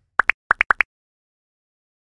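An outro sound effect of six quick bubbly pops, a pair and then a run of four, alternating lower and higher in pitch, all within the first second.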